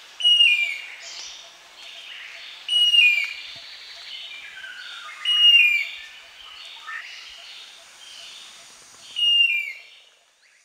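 Silver-breasted broadbill calling: four loud, short whistles, each falling in pitch, a few seconds apart. Softer calls of other birds run underneath.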